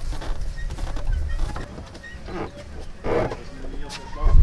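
Low rumble with a few brief, indistinct voices in the background, the loudest about three seconds in.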